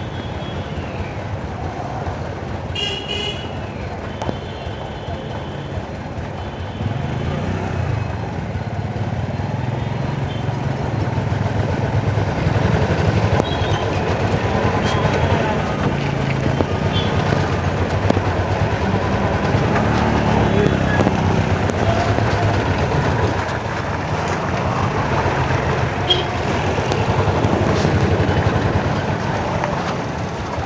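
Busy street traffic: vehicle engines running close by, and a short horn toot about three seconds in. The traffic noise grows louder from about seven seconds.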